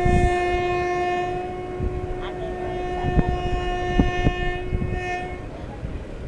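Train horn sounding one long, steady blast that stops near the end, over the rumble of a moving passenger coach and a few sharp clicks of wheels on rail joints.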